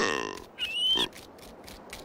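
Cartoon crocodile's grunting call that starts loud and falls in pitch, followed a moment later by a shorter call with a high squeaky rising note.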